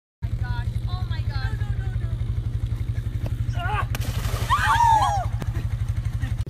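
A small engine running steadily with a fast, even pulse. High sliding squeaky sounds come over it, loudest about four and a half to five seconds in.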